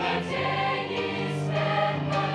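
Large mixed choir of men's and women's voices singing a Russian hymn in sustained, changing chords.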